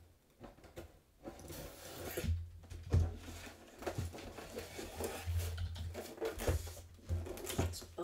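Folding utility knife slicing through the tape and cardboard of a sealed box, then cardboard scraping and rustling with scattered clicks as the lid is worked off.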